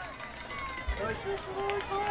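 Outdoor stadium crowd ambience: distant voices and calls from the stands and the field, with a short low thump about a second in.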